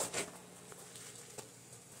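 A pause with faint background: a low steady hum and two faint, brief clicks in the middle.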